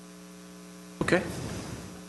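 Steady electrical mains hum: a low buzz made of evenly spaced tones. A voice says "Okay" about a second in, and the hum carries on faintly under it.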